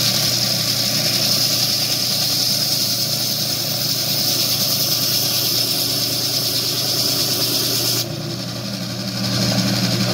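Gryphon AquaSaw XL diamond band saw running, its blade cutting through a coral colony with a steady hiss over the motor's hum. About eight seconds in the cutting hiss drops away as the piece comes off the blade, and the motor hums on.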